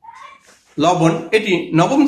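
A man speaking in Bengali in a small room, lecturing. Just before he starts, there is a brief faint high-pitched cry.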